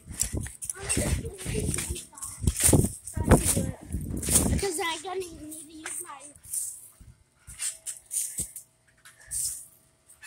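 Rough rumbling and crackling noise from a phone jostled about while its holder moves on a trampoline, lasting about four seconds. It is followed by a short wordless child's voice and a few scattered taps and rustles.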